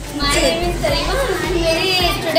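Overlapping voices of women and children talking in a busy room.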